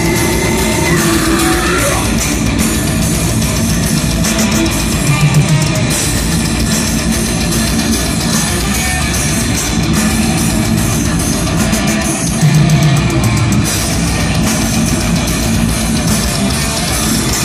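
Live heavy metal band playing loud: distorted electric guitars, bass guitar and drum kit in a dense, continuous wall of sound, with heavier low-end surges twice.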